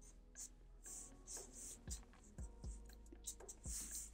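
Faint scratching of a felt-tip marker drawing on paper, in a series of short separate strokes.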